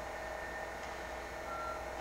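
Pause in speech: steady room tone with a low electrical hum and faint steady whine, and a short faint tone about three quarters of the way through.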